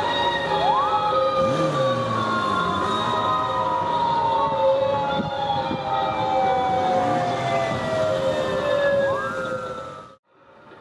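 Police motorcycle sirens wailing, each tone rising quickly and then falling slowly over several seconds. A fresh rise starts near the end, over motorcycle engines revving.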